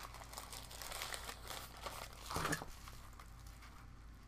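Packaging crinkling and rustling faintly as a small part is handled and turned over in the hands, with a brief murmur from the man about two and a half seconds in.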